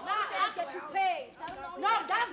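Speech only: voices talking, overlapping at times.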